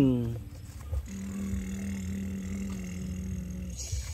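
A child imitating a truck engine with the voice. A pitched engine noise falls away in the first half second, then a steady hummed drone starts about a second in and stops shortly before the end.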